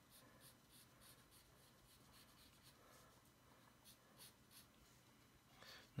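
Faint scratching of a graphite pencil on paper in short, irregular strokes, as the outline of a sketch is gone over to make it bolder.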